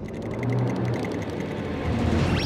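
Cartoon sci-fi ray-gun sound effect: a steady electronic whirring hum with a fast, even ticking pulse through the first second or so.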